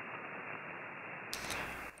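Band noise from an HF SSB receiver tuned to 20 metres: a steady, muffled hiss, with no trace of the station's own 1500-watt transmission on 40 metres. This shows good isolation between the two bands.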